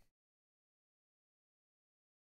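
Near silence: the sound track drops out to dead silence just after the start.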